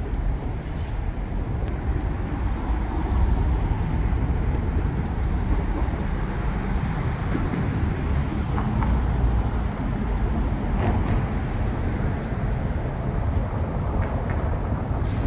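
Steady low rumble of city road traffic.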